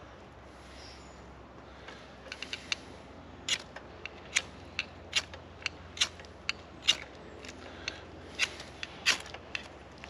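A bush knife's blade scraping in a run of short, sharp, irregular strokes, starting about two seconds in.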